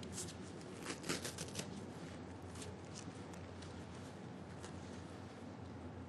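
Papers being handled and shuffled at a desk: a cluster of short crisp rustles about a second in, then a few scattered ones, over a steady low hum of room tone.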